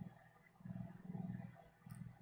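A man's faint, low hum under his breath, with one stretch of about a second through the middle.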